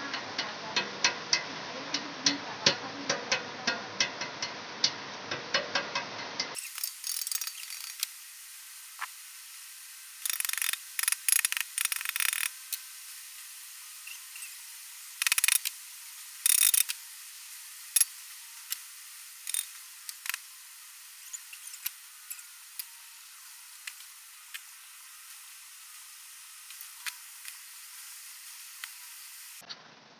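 Hammer tapping a headset bearing cup into a mountain-bike frame's head tube: a run of sharp knocks, two or three a second. About six seconds in the sound changes and goes thin, and scattered clusters of lighter clicks and taps follow.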